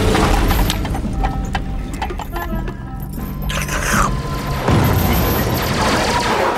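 Cartoon soundtrack music over the deep rumble of explosions from an aerial bombardment, with a fresh blast about five seconds in.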